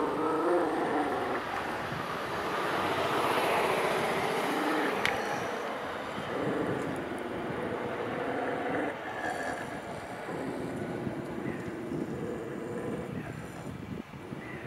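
A dog growling at another dog across a fence in several long, drawn-out growls, each two to three seconds long with short breaks between, a warning growl. A broad rushing noise swells a few seconds in, with one sharp click.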